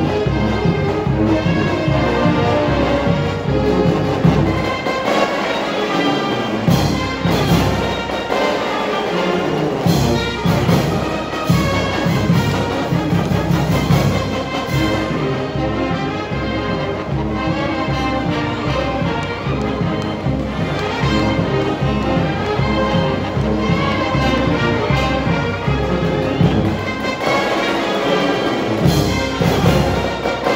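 Brass marching band playing a lively tune, with horns, saxophones and sousaphones over a steady bass-drum beat. The low beat drops out briefly twice, around five and eight seconds in.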